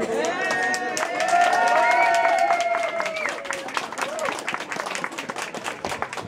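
A small crowd applauding, with a few voices holding a long cheer through the first half. The clapping thins out toward the end.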